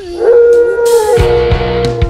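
A long howl voiced for an animatronic wolf, sliding up briefly and then held on one pitch, over music with a few drum hits.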